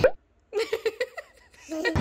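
A short laugh of about six quick pulses, lasting under a second.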